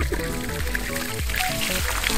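Background music over water starting to pour and splash from the open end of a PVC pipe onto the ground. The music is the louder of the two.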